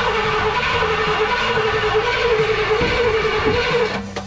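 Starter motor cranking a 1964 Pontiac LeMans V8 steadily without it firing, turning the engine over to prime a dry fuel line. The cranking cuts off suddenly near the end.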